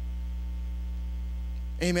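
Steady low electrical mains hum on the sound track, unchanging in level, with a man's voice coming in near the end.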